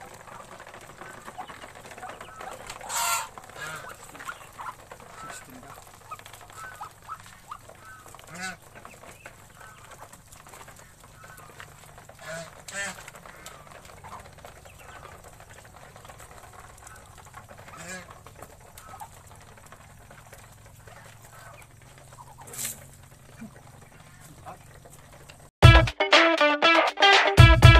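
Domestic goose and Muscovy ducks calling as they feed, with a louder honk about every four to five seconds over steady softer calling. Music with guitar starts at the very end.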